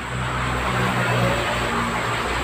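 Water pouring from a plastic bottle onto the potting soil of a grow bag, with a steady low hum underneath.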